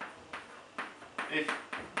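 Chalk tapping and scratching on a blackboard as mathematical symbols are written: a quick, uneven series of sharp clicks.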